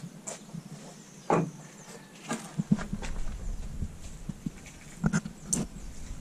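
Irregular knocks and thuds from work on the timber roof rafters of a cinder-block house: boots on the block walls and wood being handled, with a low rumble from about halfway.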